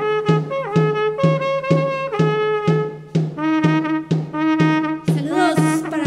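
Andean carnaval music played by a band of wind instruments: a melody over a steady beat of about two strokes a second.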